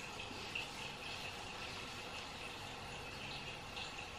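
Faint, steady sound of a bathroom tap running into the sink, with a thin steady high tone in the flow.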